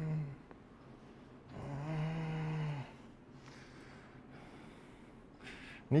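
A man groaning in pain to act out a patient with back pain: a low held 'mm' that trails off just after the start, then a second, longer groan from about a second and a half to nearly three seconds in.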